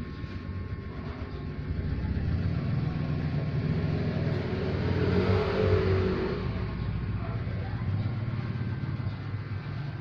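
Ingco 550W spray-gun turbine motor, converted to a shop vacuum, running steadily and drawing air through its hoses into a homemade cyclone dust separator. It gets louder over the first few seconds.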